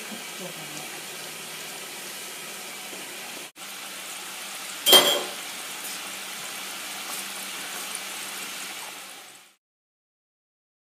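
Mutton curry simmering in a steel pot, a steady bubbling hiss as the meat cooks until soft. A single sharp clink about five seconds in. The sound fades out near the end.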